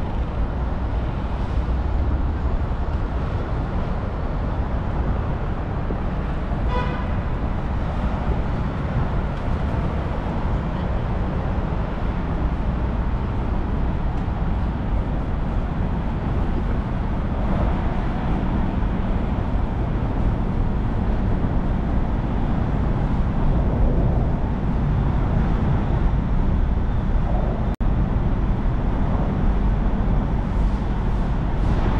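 Steady city traffic noise, a constant low rumble of cars and buses from the street and the elevated roadway overhead. A brief pitched tone sounds about seven seconds in, and the sound drops out for an instant near the end.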